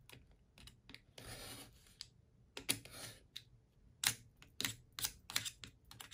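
Craft knife blade drawn along a steel ruler, slicing paper on a cutting mat: a few short scraping strokes, then a quick run of sharp clicks and taps in the second half.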